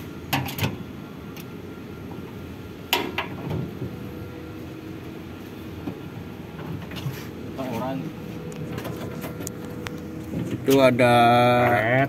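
A few light clicks and taps of wire connectors and a screwdriver being handled, over a steady low background rumble.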